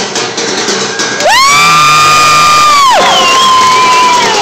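Fast drumming on upturned plastic 5-gallon buckets and pans stops about a second in. A very loud, high-pitched whoop follows, held steady for nearly two seconds, then a second, slightly lower held call that slides down at its end, over crowd cheering.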